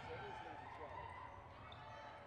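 Faint gym ambience: a basketball being dribbled on a hardwood court under a low murmur of crowd voices.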